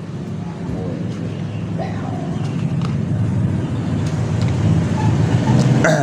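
A motor vehicle engine running steadily in the background, growing louder toward the end.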